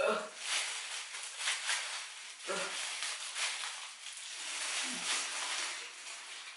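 Crinkling and rustling of disposable plastic gloves gripping a plastic bottle as the cap is twisted off, with a woman's effortful grunts ("ugh") near the start and about two and a half seconds in.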